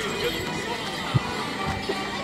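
Live folk music for Morris dancing, a steady tune played in the open street, with a single sharp knock just over a second in.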